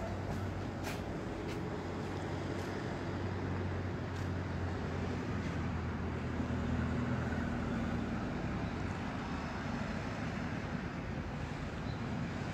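Steady low hum of road traffic, with a few faint clicks in the first four seconds.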